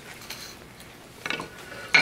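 Faint handling noise of model-rocket parts on a tabletop, with a short cluster of light knocks and clinks about a second and a half in.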